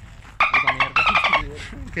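A person's voice: a short, high-pitched, rapidly pulsing vocal burst without words, lasting about a second, followed by quieter voice.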